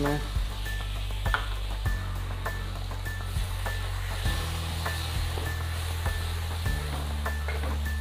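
Tomato puree, onion and ginger-garlic paste sizzling in a nonstick frying pan as a spatula stirs them. There are scattered sharp clicks of the spatula against the pan over a steady frying hiss.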